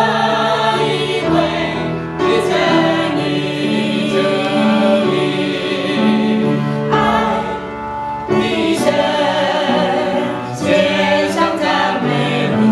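A small mixed group of women and men singing a Chinese worship hymn together, in long held phrases with brief breaths between lines.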